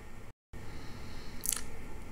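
Low steady hiss of a voice-over microphone in a pause between sentences, cut to dead silence for a moment about a third of a second in, with one short faint noise about a second and a half in.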